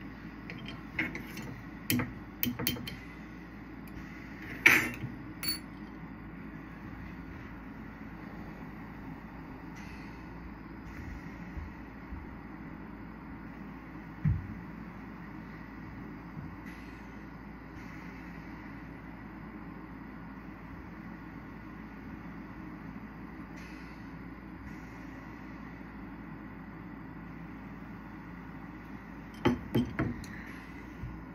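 Small oxygen-fuel glassworking bench torch burning with a steady hiss. A few sharp clicks and taps of glass and tools come in the first six seconds, and a single low knock about fourteen seconds in.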